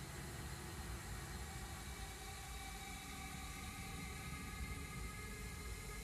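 Steady low-level hiss and hum with a few faint steady tones, and no distinct event.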